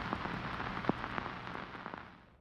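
Crackling hiss over a low rumble, with a few scattered sharp clicks, slowly fading out.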